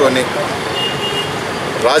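Steady background noise in a pause of a man's speech, which breaks off just after the start and resumes just before the end.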